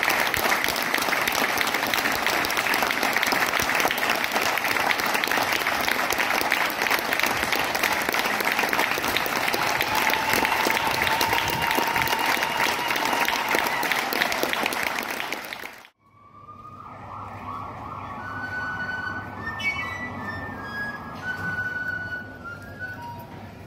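A crowd applauding steadily, with a drawn-out whistle- or cheer-like tone rising through it partway. The applause cuts off abruptly about sixteen seconds in, and instrumental music begins: a sustained note over a low drone, with short higher notes.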